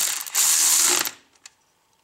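Cordless electric ratchet whirring in two short bursts as it runs a bolt into the transfer case's shift motor, stopping about a second in.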